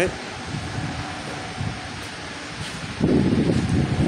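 Quiet steady shop background, then from about three seconds in a loud, dense rumbling of wind or handling buffeting on the phone's microphone as the camera moves along the car.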